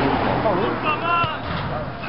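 Men's voices calling out on an outdoor football pitch over a steady noisy background, with one raised call about a second in.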